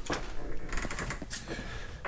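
A door being handled while someone passes through it: a few soft clicks and knocks over low rustling.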